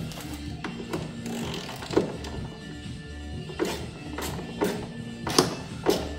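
Background music with about six sharp taps and clicks through it, the loudest near the end: a socket and ratchet being fitted to and worked on a corroded, rounded-off bolt.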